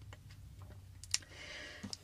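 A few faint clicks in a quiet pause, the sharpest about a second in, over a low steady hum.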